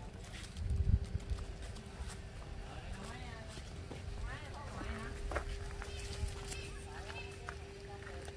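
Faint distant voices over a steady low hum, with a few light clicks from handling.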